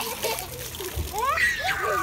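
Water splashing and sloshing in a shallow plastic kiddie pool as children step and stamp about in it, with children's high voices calling out in the second half.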